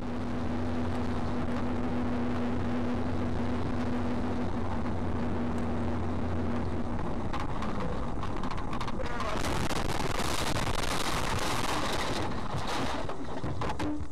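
Road noise inside moving vehicles heard through a dashcam: a steady drone of engine and tyres with a low hum, which changes about seven seconds in to a noisier, hissier rush. A few sharp knocks come near the end.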